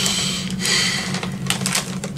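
Foil chip bag crinkling as it is handled and lifted, in several irregular crackling bursts.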